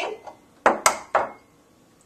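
An egg being cracked by tapping it against the rim of a small glass bowl: three sharp knocks in about half a second.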